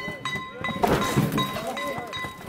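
Festival float-pulling music: high, held notes of a flute over people's voices, with a loud thump about a second in.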